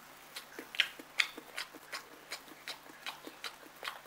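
A toddler chewing tangerine segments with his mouth open: a run of short, faint mouth clicks and smacks, several a second.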